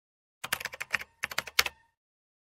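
Keyboard typing sound effect: two quick runs of key clicks, about eight and then about five, with a short gap between, timed to title text typing itself on.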